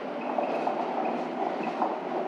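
A steady, machine-like rushing noise with a faint high whine, holding even throughout.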